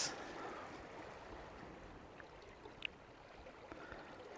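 Faint, steady outdoor background hiss, with one brief high-pitched chirp about three seconds in.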